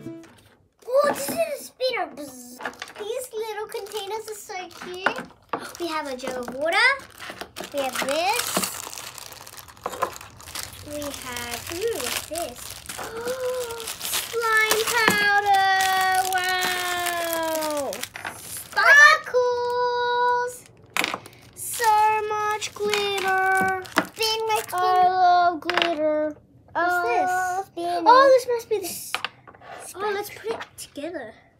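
Young children's voices exclaiming and vocalizing without clear words, including long falling 'whoa'-like calls and a held sung note about two-thirds of the way through, with plastic packets crinkling as they are handled.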